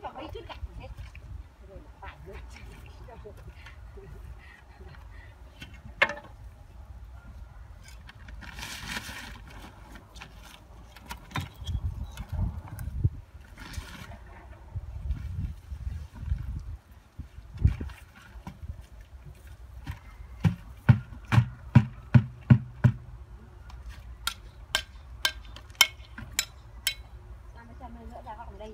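Sharp knocks of hand tools on brick and stone during grave masonry work. The knocks are scattered at first, then come in quick runs of about two a second near the end, with low wind rumble on the microphone in between.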